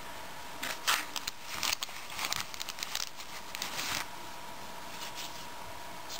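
Hands handling plastic: a run of short crinkles, rustles and light scrapes starting just under a second in and lasting about three seconds.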